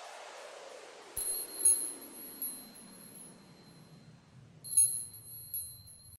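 Logo-intro sound effect: high, glassy chime strikes in two clusters, several about a second in and another group near five seconds, over a hissing sweep that falls steadily in pitch and fades.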